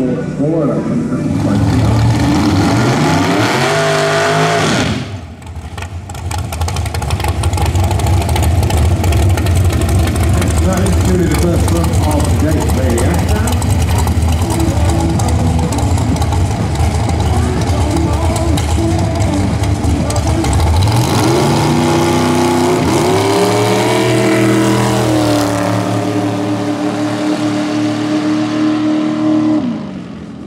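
Dragster engine at a drag strip, running with a loud, rough low rumble on the start line. At about 21 s it revs hard and launches, its note climbing and holding high down the track before dropping away near the end. In the opening seconds another race car's engine note rises and falls as it finishes its run.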